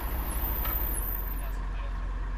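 Steady low rumble of an idling car and street traffic, with a thin high-pitched whine that stops about a second and a half in.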